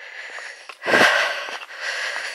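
A hiker's breathing close to the microphone as she walks, with one louder breath about a second in.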